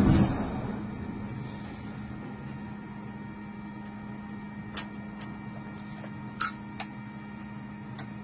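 Jet noise from an F/A-18 just catapulted off the bow fades away within the first half second, leaving the steady electrical hum of the catapult control station's equipment. A few short sharp clicks sound over the hum, the loudest about six and a half seconds in.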